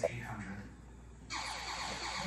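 Quiet room with faint, indistinct speech; a soft hiss comes in about a second into the pause.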